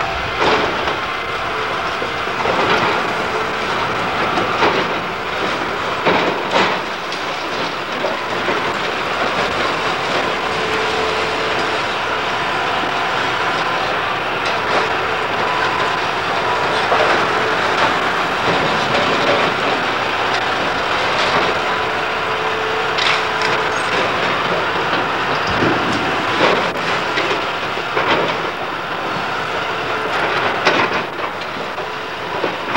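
Hydraulic demolition excavator tearing into a brick building: a continuous din of crunching, scraping masonry and timber over the machine's running engine, with frequent crashes of falling debris.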